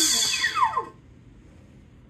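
Small electric ducted fan (EDF) on a 3S battery winding down from full throttle: its whine falls steadily in pitch and fades out about a second in.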